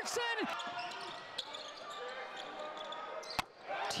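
Basketball game sound in an arena: crowd din with the ball bouncing on the hardwood court. A commentator's voice trails off at the start. Near the end a sharp click and a brief drop in level mark a splice between highlight clips.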